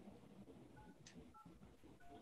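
Faint telephone keypad touch-tones (DTMF), two short two-note beeps about half a second apart, as digits of a meeting ID are keyed into a phone dialed into a Zoom call, over low background noise. A brief soft hiss falls between them.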